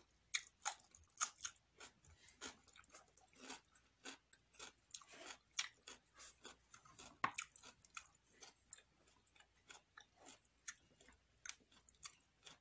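A person chewing crisp raw vegetables and lettuce: an irregular run of short wet crunches, several a second, the loudest about a second in and again a little past the middle.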